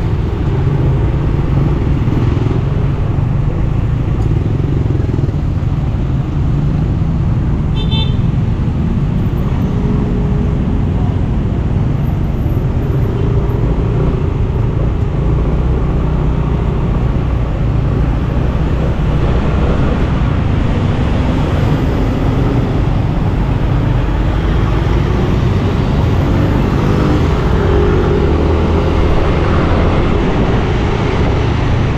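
Yamaha motor scooter riding in dense city traffic: a steady low engine and road rumble under a continuous wash of surrounding traffic noise. A short high beep, like a vehicle horn, sounds about eight seconds in.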